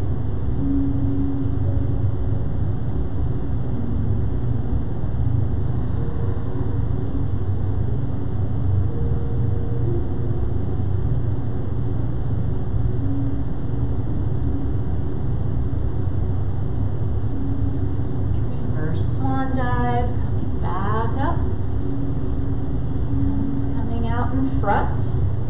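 A steady, loud low machine rumble runs without a break, like a building's heating or ventilation unit running. A woman's voice speaks briefly about 19 seconds in and again at the very end.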